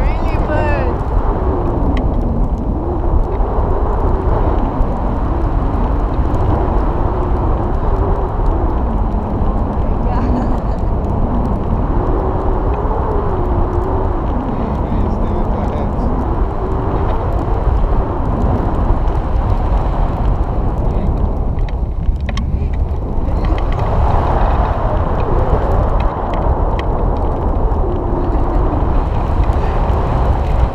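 Airflow of a hang glider in flight buffeting the frame-mounted camera's microphone: a loud, dense low rumble of wind noise with a faint tone that slowly wavers up and down. The rush thins briefly a little past twenty seconds in.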